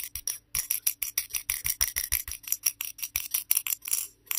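A metal ball bearing rattling inside a hand-held dexterity puzzle's glass-covered steel cone as the puzzle is jiggled: rapid, irregular bright clicks, about seven or eight a second.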